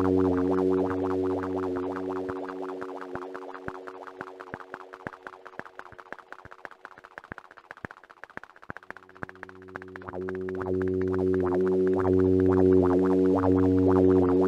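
Dreadbox Dysphonia modular synthesizer playing a low drone of several steady tones under a fast, even train of clicky pulses. The drone fades away about a third of the way in, leaving the pulses on their own and much quieter, then swells back about two-thirds through.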